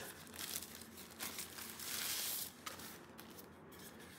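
Tissue-paper wrapping softly rustling and crinkling as it is pulled off a small boxed electronic device, with a longer rustle about two seconds in.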